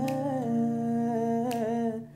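A man singing a long, held, slowly wavering note in a Hindi song, to an acoustic guitar he is playing himself.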